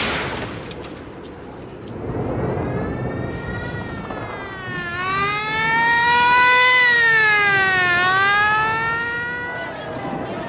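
A siren wailing, its pitch slowly rising and falling about every three seconds, over a low background rumble. It fades in about two seconds in and is loudest just past the middle.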